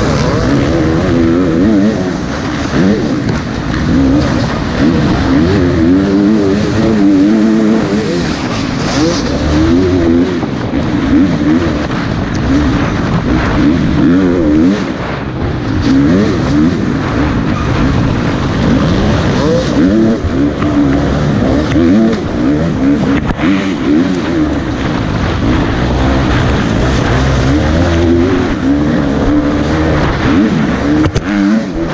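KTM 350 XC-F four-stroke dirt bike engine ridden hard, its pitch rising and falling constantly with throttle and gear changes, picked up by a helmet-mounted camera.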